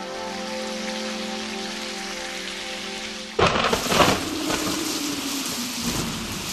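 A held chord from the song rings out. About three and a half seconds in, a sudden thunderclap breaks, followed by the steady hiss of heavy rain.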